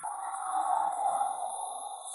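A swelling electronic whoosh in the soundtrack, rising over about a second and then fading, with a faint steady high tone.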